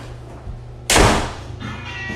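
A door slammed shut once, about a second in: a single loud bang that dies away within half a second. Music starts up near the end.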